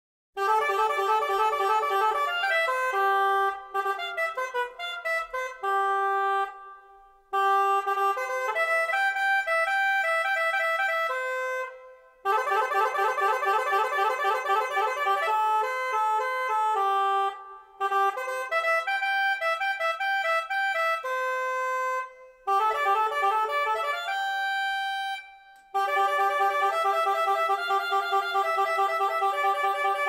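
A reed wind instrument playing alone, sounding a melody in short phrases with brief pauses between them. It comes in just after a moment of silence at the start of the piece, with no bass or drums under it.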